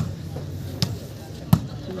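A volleyball being hit with the hand: three sharp slaps about three-quarters of a second apart, over a murmur of crowd voices.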